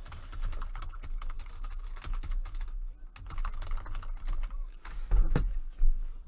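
Typing on a computer keyboard: a fast, uneven run of key clicks, with a heavier bump about five seconds in.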